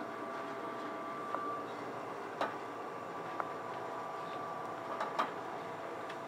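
Steady hum of a kitchen room with a few faint steady tones, broken by a handful of brief light clicks or knocks, about two and a half seconds in and again near the end.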